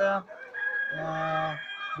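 Kadaknath rooster crowing: one drawn-out call lasting over a second.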